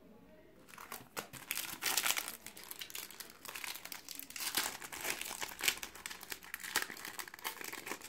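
Foil trading-card packet being torn open and crinkled by hand: a dense run of crackles and rustles that starts about a second in, with several louder crackles along the way.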